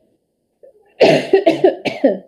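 A woman coughing: a quick run of about four coughs starting about a second in.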